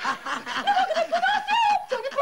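High-pitched laughter in quick, repeated bursts.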